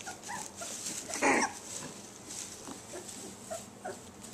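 Border collie puppies whimpering with short, faint, high squeaks, and one louder, harsher cry just over a second in.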